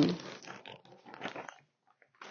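The tail of a drawn-out spoken 'um', then faint, irregular crinkling and rustling of a clear plastic bag being handled, which stops a little before the end.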